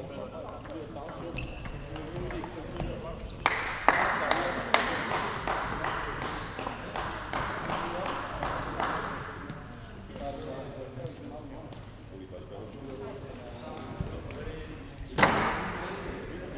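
Table tennis in a large sports hall: clicks of the ball on bat and table, then a few seconds of rapid clapping after a point ends, under a background of voices. A single loud sharp crack comes near the end.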